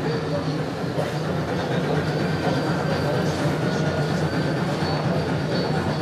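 HO-scale model steam locomotive running along the layout track: a steady hum and rumble from the running train, with faint high squeaks coming and going.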